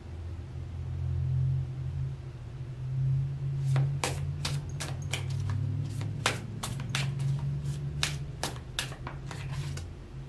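Tarot cards being shuffled and handled: a run of sharp, irregular clicks and snaps from about four seconds in, over a steady low hum.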